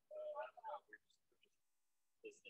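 Faint speech for about the first second, then near silence.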